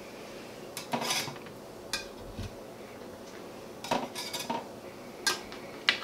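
A metal spatula clinking and scraping against an aluminium baking sheet and wire cooling racks as baked sugar cookies are lifted onto the racks. It comes as a handful of short, separate clinks and scrapes.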